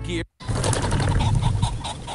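A pheasant-hunting PSA's sound track, played over a video call. After a cut-out about a quarter second in, the PSA starts again with a pheasant flushing: a loud whir of wingbeats and cackling, as a shot is about to follow.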